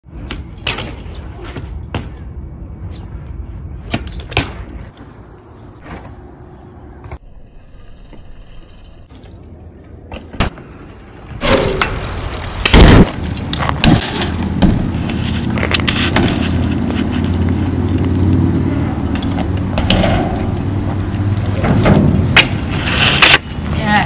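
Bicycle tyres rolling and rattling over concrete, with scattered clicks and clatter from the bike. About halfway through, a loud thump as the bike lands a jump, then louder steady rolling rumble over the ramps.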